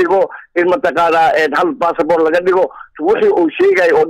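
Only speech: a man talking in Somali.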